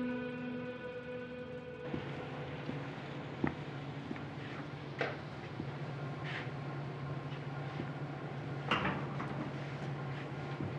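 Sad string music ends about two seconds in. Then comes the room tone of a quiet diner: a steady low hum with a few scattered knocks and clatters.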